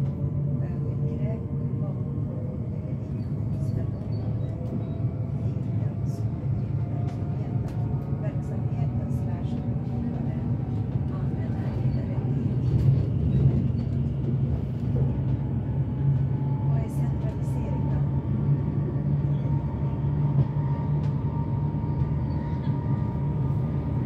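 Electric commuter train heard from inside the carriage while running at speed: a steady low rumble of wheels on track, with a faint electric motor whine slowly rising in pitch and occasional light clicks.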